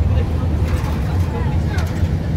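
City bus in motion heard from inside the passenger cabin: a steady, deep engine and road rumble.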